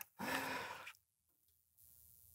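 A man's short, breathy sigh lasting under a second, followed by near silence.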